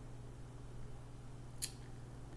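One short, crisp snap about one and a half seconds in as a tarot card is handled, over a faint steady hum.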